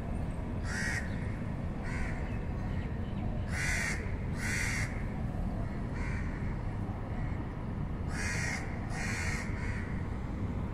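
A bird calling repeatedly: about eight short calls of under half a second each, at irregular intervals, over a steady low background rumble.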